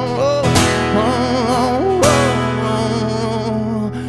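A man singing long held notes with vibrato over a strummed acoustic guitar.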